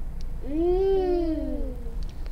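A single drawn-out vocal call, about a second and a half long, that rises and then falls in pitch.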